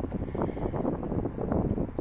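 Wind buffeting the microphone: an uneven, low rumbling noise.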